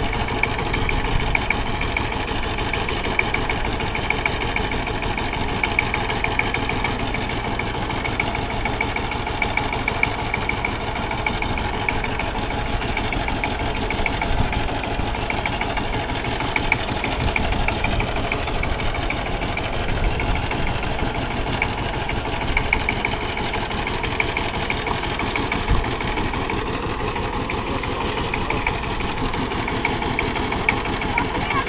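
Two-wheel power tiller's single-cylinder diesel engine running steadily with an even, rapid chug as the tiller is driven slowly along.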